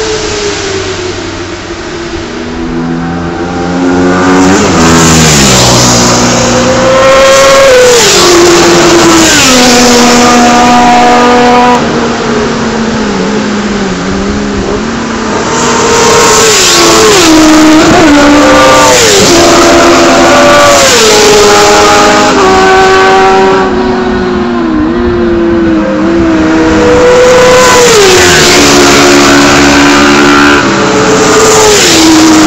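A string of sport motorcycles passing at racing speed, their engines revving high. The pitch of each rises, steps and falls as it goes by, and the bikes overlap.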